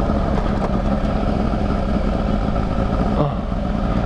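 Honda sport motorcycle engine running at a steady, low road speed, heard from the rider's seat with wind rumbling on the microphone.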